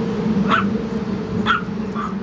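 Chihuahua puppy giving two short, high yips about a second apart, over a steady low hum.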